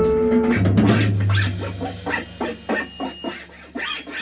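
Instrumental avant-jazz improvisation. Held notes over a steady bass and cymbal strokes, then about a second in the texture thins to a quieter, sparse run of short plucked guitar notes, about four a second.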